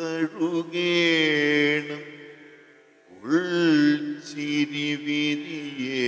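A voice chanting in long held notes, in two phrases, the second swooping up into its note about three seconds in.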